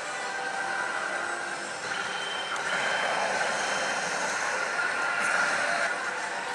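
Steady din of a pachislot parlor: the electronic effects and jingles of many slot machines blend into a dense roar with a few held electronic tones, swelling a little about two seconds in.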